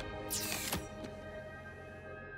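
Film score music with sustained held tones. About half a second in, a sweeping effect falls quickly from high to low pitch, followed by a faint click, and then the music eases down.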